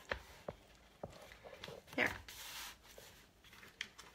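Quiet handling of a paper journal: a few faint light clicks, then a brief soft paper rustle just after one spoken word.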